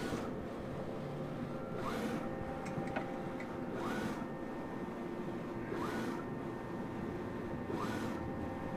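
Mimaki UJF-6042 UV flatbed printer printing: the print-head carriage sweeps back and forth, each pass marked by a short rising whine about every two seconds, over the machine's steady hum.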